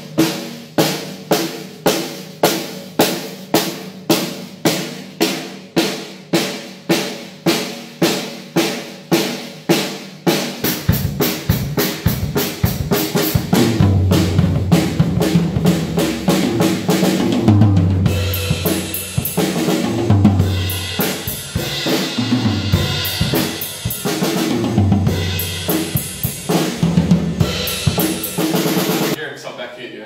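Acoustic Pearl drum kit. For the first ten seconds one drum is struck evenly about twice a second, each hit ringing out. Then the drummer plays a full groove with kick, snare and crashing cymbals, stopping just before the end.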